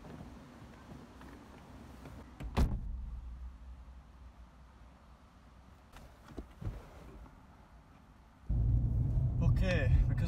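Handling noise from a phone being set up inside a car: a sharp knock about two and a half seconds in and a few lighter clicks around six seconds. About eight and a half seconds in, a loud low rumble starts suddenly and keeps going.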